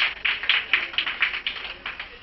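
A small group clapping, a patter of uneven claps that thins out and dies away near the end.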